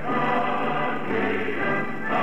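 A choir singing a Persian political anthem in sustained, held chords.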